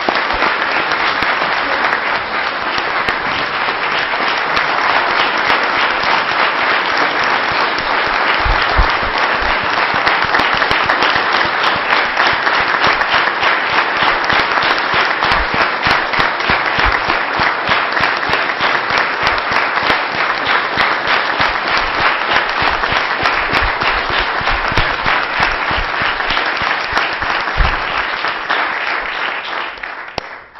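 A large audience applauding, a dense and steady clapping that holds throughout and dies away at the end. Everyone is on their feet, applauding the close of a speech.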